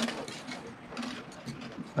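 Faint handling noise of bare copper wire being wound tightly around a thin plastic tube to form a coil: soft scraping with small clicks.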